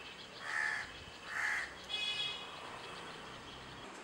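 A crow cawing twice, about a second apart, followed by a higher call about two seconds in, over a faint steady outdoor background.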